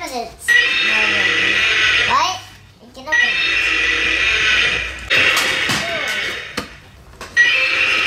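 Battery-operated toy dinosaur playing its electronic roar through a small built-in speaker, four roars of about two seconds each with short gaps between them, the last starting near the end.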